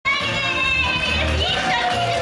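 Opening of an idol pop song played through the stage PA, with a pulsing bass beat under a high melody line that is held steady, then glides about halfway through.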